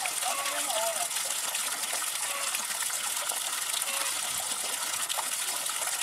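A steady jet of water from a pipe splashing continuously into pond water.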